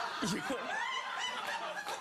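Studio audience laughing, with a man's voice cutting in briefly with one word near the start.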